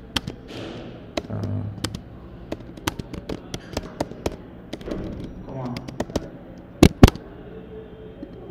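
Typing on a computer keyboard: irregular keystroke clicks, a few a second, with two much louder clacks in quick succession about seven seconds in.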